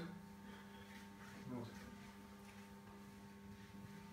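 Near silence: a quiet small room with a steady electrical hum.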